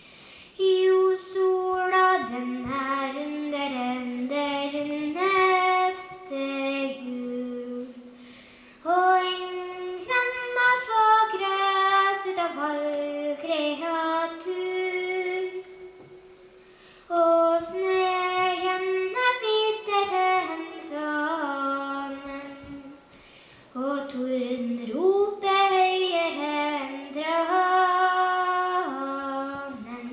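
A young girl singing stev, traditional Norwegian folk verses, solo and unaccompanied, in four sung phrases with short breaths between them.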